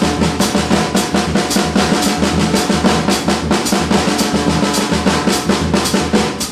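Drum kit played in a fast, continuous stick pattern of dense, even strokes across the snare and toms, with a repeating bass drum pulse from a samba foot pattern underneath.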